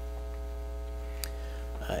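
Steady electrical mains hum with a faint click about a second in.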